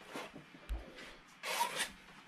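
Palette knife scraping thick oil paint across a stretched canvas: a short scrape, a dull low knock a moment later, then a longer, louder scrape near the end.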